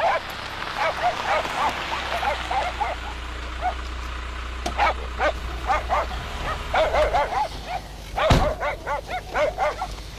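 Dogs barking in quick short yaps, several a second, in runs through the whole stretch, loudest in a burst about eight seconds in. A low steady hum runs underneath for the first six seconds.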